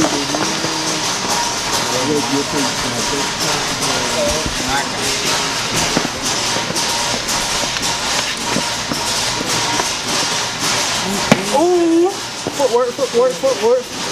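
Store background: a steady hiss with indistinct voices talking underneath, a single sharp click about eleven seconds in, and a nearer voice speaking near the end.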